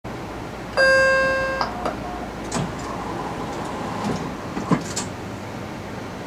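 BART train car's electronic chime sounding about a second in, a single ringing tone that fades and steps down to a lower note, the warning that the doors are closing before departure. It is followed by a few clunks over the steady hum of the car.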